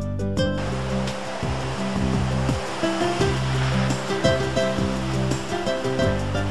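Ocean surf washing and breaking over coastal rocks, a steady rush of water that comes in under a second in, heard under background music.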